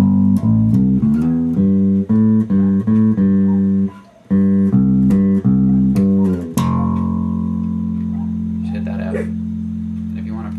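Electric bass guitar playing the last round of the main riff as a run of plucked notes, with a brief pause about four seconds in, then landing on a long low F, the song's final note, left to ring and slowly fade.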